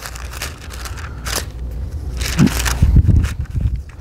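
Thin Bible pages being leafed through and turned close to the microphone, rustling and crackling in irregular strokes, with a few low handling thumps about three seconds in.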